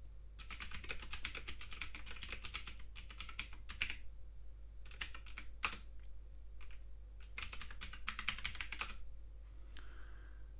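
Computer keyboard typing: a quick run of keystrokes lasting about three and a half seconds, a few single key presses, then a second shorter run near the end. The keystrokes are a terminal command followed by a password being typed.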